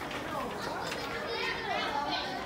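Children's voices chattering in the background, several overlapping at once, with no clear words.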